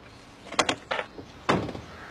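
A car door being shut: a few light clicks, then the door closing with a solid slam about one and a half seconds in.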